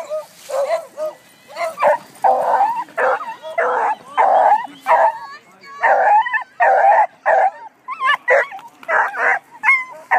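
Beagles barking and baying excitedly, a run of short loud calls at about two a second, some drawn out with a rising and falling pitch.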